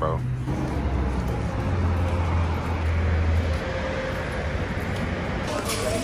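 Steady outdoor traffic noise with the low hum of a nearby vehicle engine, which cuts off about three and a half seconds in.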